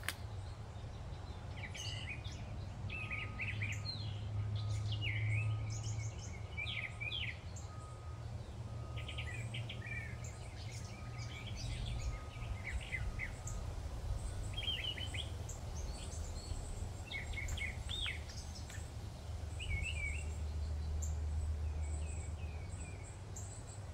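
Birds chirping and calling outdoors: many short high calls scattered throughout, with a faint short note repeating about once a second through the first half. A low steady rumble underlies them and swells twice, a few seconds in and near the end.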